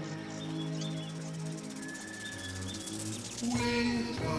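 Film soundtrack music: slow, sustained held notes in a gap between sung lines, with a singing voice coming back in near the end.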